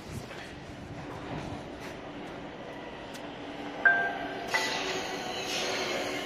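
A C30 Stockholm metro train is coming out of the tunnel and into the underground platform. The rumble of its wheels on the rails grows louder, and about four seconds in a sudden louder burst brings in steady whining tones and brighter rail noise as the train draws in.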